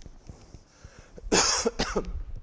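A person coughing twice in quick succession, about a second and a half in: a loud first cough and a shorter second one.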